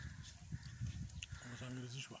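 Faint low rumble with a few light clicks, then a man's low voice starting about one and a half seconds in.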